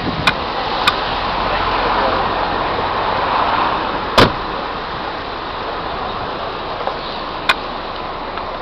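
Steady road traffic noise with a gentle swell in the first few seconds, broken by a few sharp clicks, the loudest about four seconds in.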